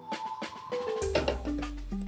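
Background music: pitched notes changing quickly over sharp, woody percussion hits, with a deep bass note coming in about a second in.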